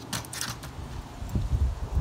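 Handling noise: a few soft rustles and taps as a hand moves over the plastic milk crate and the phone is shifted. A low rumble follows in the second half.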